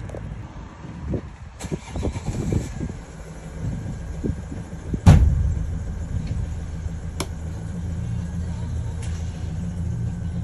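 Knocks and handling noise as the camera is set down, then the Vauxhall Vivaro van's engine starts suddenly about five seconds in and settles into a steady idle.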